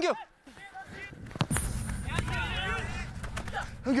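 Field sound of an outdoor football match: one sharp kick of the ball about a second and a half in, then open-air background noise with faint distant players' shouts, and a player calling out briefly near the end.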